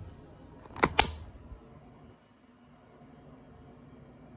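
Two sharp plastic clicks in quick succession about a second in, from a makeup product's cap or case being handled; otherwise faint room tone.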